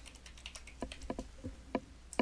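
Computer keyboard typing: a short, uneven run of about nine single keystrokes as a password is entered.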